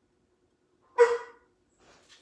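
A pet dog gives one short, loud bark about a second in.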